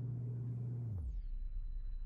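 Low, steady electrical hum of running aquarium equipment. About a second in, it drops to a deeper, duller hum.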